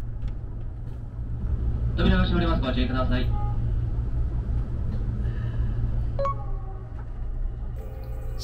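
Steady low rumble inside the cabin of the Nankai rapi:t train as it stands at a station. A brief voice announcement comes about two seconds in.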